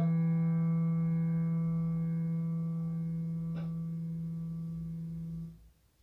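A final held low note on an electronic keyboard sustaining with its overtones and slowly fading, then cutting off shortly before the end. A faint click sounds about halfway through.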